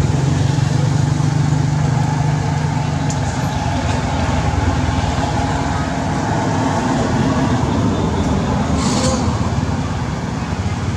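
Steady low rumble of a running motor vehicle, strongest in the first three seconds, with a brief click near the end.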